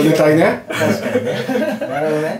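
Men chuckling and laughing together, their voiced laughter mixed with bits of talk, with a brief break about half a second in.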